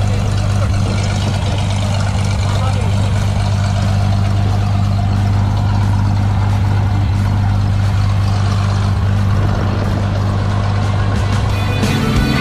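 Small single-engine propeller plane's piston engine running at idle, a steady low drone with propeller wash rushing across the microphone.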